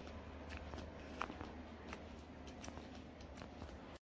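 Faint footsteps on a wet tiled walkway: irregular soft clicks and taps over a low steady rumble.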